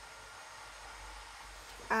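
Faint steady hissing whir of DIY work going on elsewhere in the house, even throughout with no distinct knocks or strokes.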